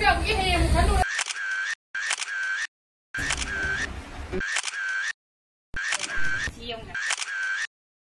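Edited audio: short snippets of speech with a repeated short sound effect, each piece cut off abruptly by dead silence, four times over.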